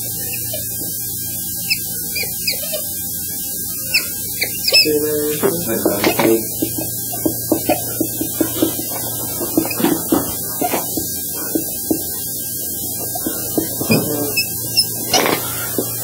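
Dry-erase marker squeaking and tapping against a whiteboard in a quick run of short strokes, starting about five seconds in, over a steady electrical hum.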